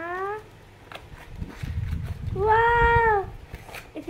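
Cardboard box being handled and pulled open, a low rustling and scraping. In the middle comes one long, drawn-out, high-pitched vocal call, rising a little and falling away, the loudest sound.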